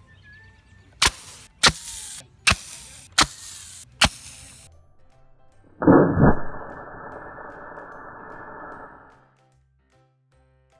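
A plastic-bottle water rocket, pumped to about 95 pounds of pressure, is released from its launcher: a sudden loud rush of escaping water and air about six seconds in, fading away over some three seconds. Before it come five sharp cracks, spaced under a second apart.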